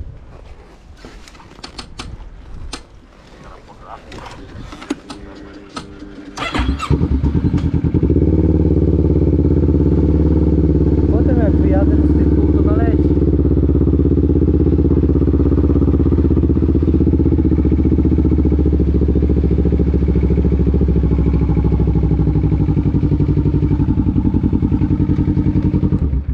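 Boots splashing through a shallow puddle. About six seconds in, a quad's engine starts and then runs steadily at an even pitch and level for the rest of the time.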